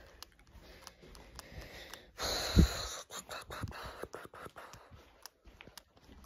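Handling noise on a phone's microphone: scattered small clicks and rubbing, with one loud breathy rush and a thump about two seconds in.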